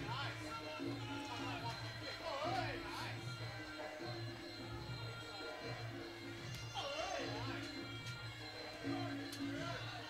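Traditional Muay Thai fight music (sarama): a wavering, ornamented reed-pipe melody over a repeating drum pattern, played during the round.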